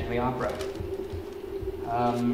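A man speaking slowly into a microphone, with one drawn-out syllable at the start and another near the end, over a steady low hum from the sound system.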